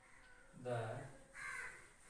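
A crow caws once, briefly, about a second and a half in, just after a man speaks a single word.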